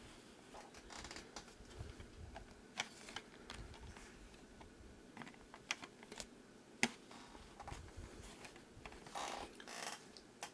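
Faint scattered clicks and light knocks of a 1:43 scale model truck and log trailer being handled and set down on a bedspread, with a short fabric rustle near the end.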